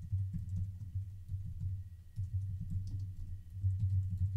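Typing on a computer keyboard: a quick, irregular run of keystrokes, each a dull, low tap with a faint click on top.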